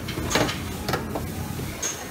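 Metal serving tongs clinking against stainless steel buffet pans: three short, sharp clinks over a steady background hubbub.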